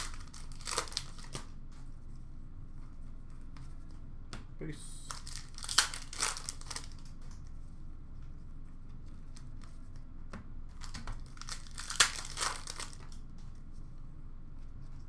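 Hockey card pack wrappers being torn open and crinkled, then cards handled, in three bursts of crackle, each with a sharp snap of the wrapper.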